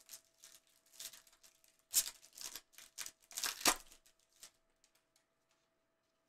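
A trading-card pack wrapper being torn open by gloved hands and the cards slid out: a few short crinkles and rips over the first four seconds, the sharpest about three and a half seconds in.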